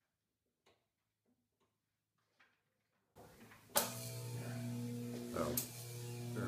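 An electrical lab apparatus switched on about three seconds in: a steady hum with several held tones, then a sharp crack about a second later and a continuing buzz with another crack near the end.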